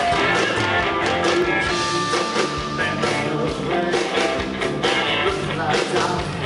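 Live country-rock band playing through an outdoor stage PA: electric guitars over a steady beat, with a man singing lead.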